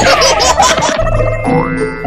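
Cartoon-style comedy sound effects over background music: a falling whistle right at the start, then a springy rising boing note repeating about every half second over a low bass line.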